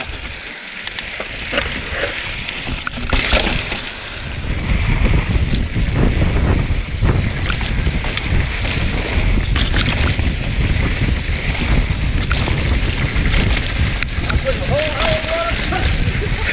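A mountain bike descending a dry dirt singletrack: wind rumbling on the microphone, tyres crunching over dirt, and the bike's chain and frame rattling and knocking over bumps. The rumble grows louder about four seconds in.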